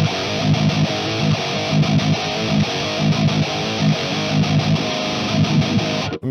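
High-gain distorted electric guitar playing a rhythmic, chugging metal riff through an amp sim and a cabinet impulse response of a Marshall 1960 4x12 with Celestion Vintage 30 speakers, captured with an Audix i5 microphone. The top end is cut off sharply.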